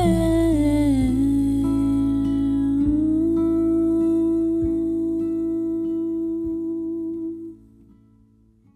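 A woman singing one long held note that slides down about a second in and then holds steady, over a few sparse plucked notes on a nylon-string classical guitar. The sound fades out near the end.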